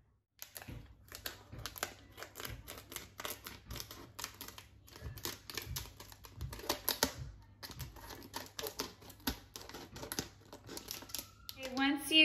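Scissors snipping through clear tape around the rims of paper plates: a long run of quick, crisp cutting clicks, with two short pauses in the middle.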